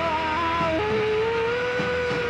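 Electric guitar holding long sustained notes, with one note giving way to a lower held note just under a second in.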